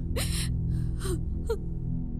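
A woman sobbing: three short, breathy gasping catches of breath in about a second and a half, over a low, steady background music drone.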